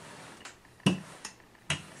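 Wooden rolling pin rolling out pastry dough on a floured countertop, with a few sharp knocks, the strongest about a second in and again near the end.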